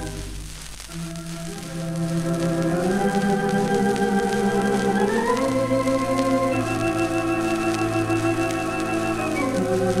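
Four-manual, twenty-rank Wurlitzer theatre pipe organ playing slow, sustained romantic chords with a wavering tremulant. It softens briefly near the start, then swells, with a high note held through the later seconds. It is heard from an old 78 rpm disc recording, with faint surface crackle.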